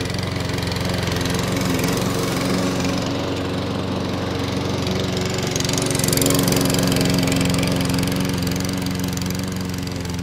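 Webb WER460SP self-propelled rotary petrol lawnmower running steadily while it cuts grass, its single-cylinder four-stroke engine and spinning steel blade under load. It gets a little louder about six seconds in as it passes close by.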